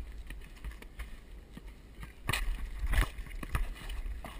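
Wind rumbling on a head-mounted action camera's microphone, with scattered knocks and scuffs of play on an asphalt basketball court, the loudest two a little past halfway and about three-quarters through.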